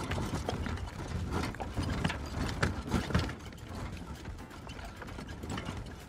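Horse-drawn cart rattling and clattering over a rough road, with irregular knocks from the wooden cart and the horse's hooves clip-clopping.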